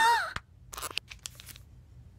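A woman's short surprised vocal exclamation at the start, then faint scattered clicks and rustles as a small ring box is handled and opened.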